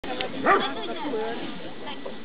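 A dog barks once, loud and short, about half a second in.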